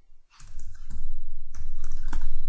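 Computer keyboard being typed on: a quick run of keystrokes starting about half a second in.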